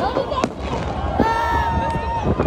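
Fireworks going off: two sharp bangs, one right at the start and another about half a second later, amid the voices of a crowd.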